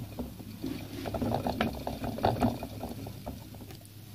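A pet hamster scurrying fast, its claws and the plastic it runs on making quick, irregular clicks and rattles.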